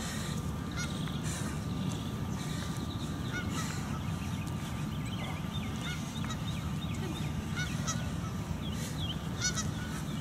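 Birds calling outdoors, short chirps scattered through the whole stretch, over a steady low rumble.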